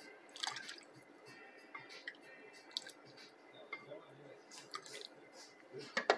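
Faint stirring of hot chocolate in a saucepan with a spoon: soft liquid drips and splashes with small, scattered clicks of the spoon against the pot.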